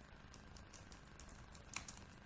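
Faint computer keyboard typing: a quick run of light keystrokes, one a little louder near the end.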